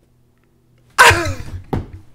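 A sudden loud vocal outburst about a second in, falling in pitch over about half a second, followed by a shorter second burst near the end.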